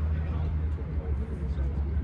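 Drag-prepared Ford Maverick idling at the start line, a steady low rumble.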